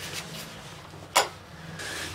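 A single sharp click about a second in, with a short ring, over a faint steady low hum.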